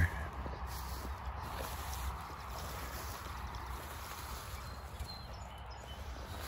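Steady low rustle and hiss of someone walking through mown hay-field grass, with no distinct footfalls standing out.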